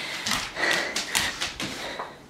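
Several light taps and soft thuds, roughly two a second, from a dog and a person moving about close to a hand-held camera.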